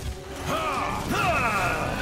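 Sci-fi cartoon battle sound effects: a quick series of electronic zaps that arch up and fall in pitch, over a low rumble, accompanying the robot's magenta energy beam.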